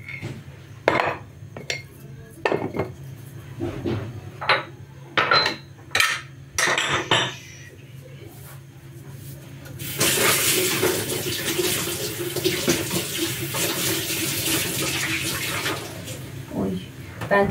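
Crockery clinking and knocking in separate strikes as saucers and cups are handled on a kitchen counter. About ten seconds in, a kitchen tap starts running steadily into a stainless steel sink.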